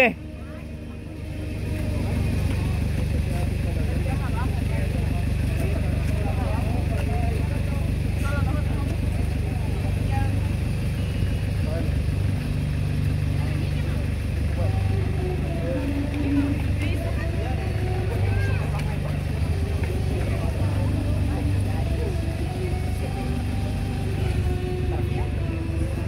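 A steady low rumble with faint background voices, starting about a second and a half in.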